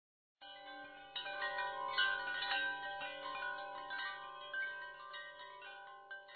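Chimes ringing: bell-like notes struck one after another and left to ring, overlapping into a sustained wash. They start about half a second in, after a moment of dead silence, and fade slowly toward the end.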